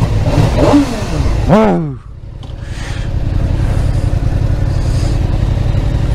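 Motorcycle engines idling at a standstill with a steady low rumble. About one and a half seconds in, a short, loud pitched sound rises and falls.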